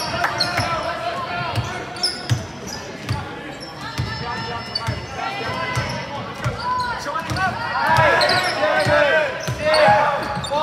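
Basketball bouncing on a hardwood court during play, with sneakers squeaking, loudest and most frequent in the last few seconds, over voices from the players and spectators.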